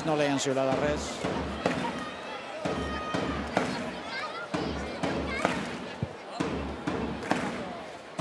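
Arena crowd voices while a basketball is bounced a few times on the hardwood court before a free throw, over a low, repeated thump.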